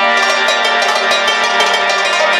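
Harmonium and Afghan rabab playing together in traditional music: held harmonium chords over a steady drone, with quick plucked rabab notes running over them.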